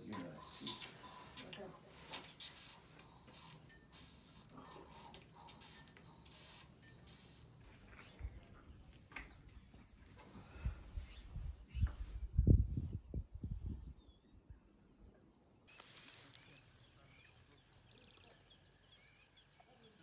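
Young elephant calf suckling milk formula from a bottle, with wet sucking and hissing noises. A cluster of low thumps and rumbles, the loudest sound, comes about halfway through.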